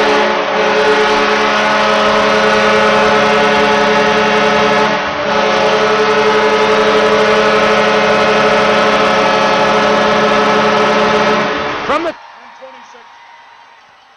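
Arena goal horn blaring in long, steady blasts over a cheering crowd, signalling a home-team goal. There is a brief break about five seconds in, and the horn cuts off suddenly about twelve seconds in, leaving a much quieter background.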